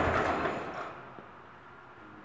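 The 1924 Kissel truck's four-cylinder Durant engine being switched off: its idle dies away over about a second and stops, followed by a single small click.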